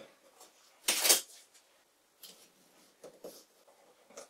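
Hands handling a taped cylinder of glued wooden staves: one short, louder scrape about a second in, then a few faint taps and rubs.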